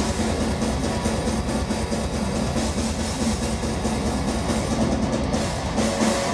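Heavy metal band playing live: distorted electric guitar and drums in a dense, steady wall of sound.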